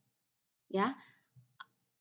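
A single spoken word in a pause of speech, followed about a second and a half in by one short, sharp click.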